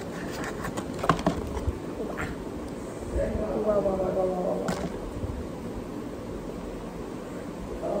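A few sharp crinkles and clicks of a plastic ketchup sachet being handled and squeezed, then a short stretch of a woman's voice partway through and another single click.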